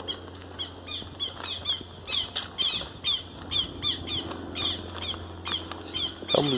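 Birds chirping: a steady run of short, high chirps, each dropping in pitch, about three a second.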